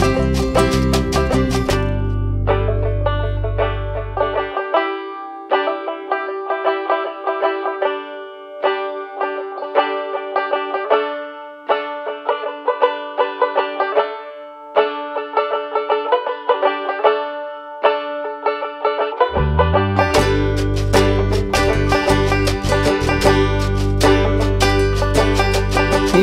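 Instrumental break in a folk-blues song: banjo picking over a steady held note. The bass and full band drop out a few seconds in and come back in about 19 seconds in.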